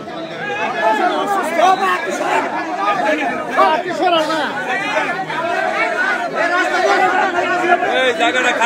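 Crowd chatter: many people talking at once, their voices overlapping continuously with no single speaker standing out.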